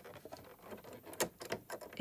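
Faint clicks and light scratching of a walking foot being handled by hand against a Janome DC3050 sewing machine's presser bar as it is taken off and repositioned, with one sharper click a little past halfway.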